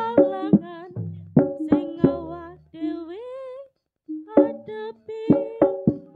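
Jaranan gamelan accompaniment: a steady run of struck, ringing pitched percussion notes with drum strokes, and a wavering melody line that glides upward in the middle. The music cuts out abruptly for a moment about four seconds in, then the struck notes start again.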